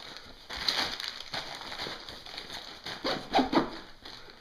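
Hands rubbing and handling the nylon fabric and webbing of a tactical backpack, an irregular rustling and scraping that gets louder about three seconds in.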